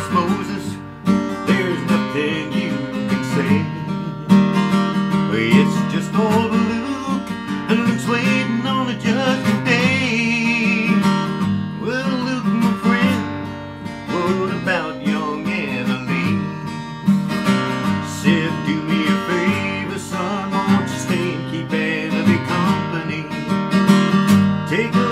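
Acoustic guitar with a capo, strummed and picked in a steady rhythm.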